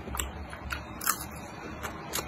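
Close-miked crunchy chewing: a person biting down on crisp food with four sharp crunches about half a second apart, the loudest about a second in.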